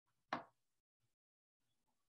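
A single short tap about a third of a second in, from hand stitching: the needle and thread pushing through quilt fabric stretched taut in an embroidery hoop. Otherwise near silence.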